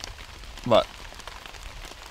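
Steady rain pattering on a shelter overhead, an even hiss broken by many small irregular drop ticks.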